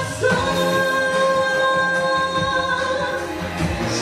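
A woman singing into a microphone over backing music, holding one long note for about three seconds before the next phrase.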